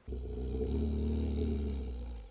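A low, deep animal growl that starts suddenly and holds steady.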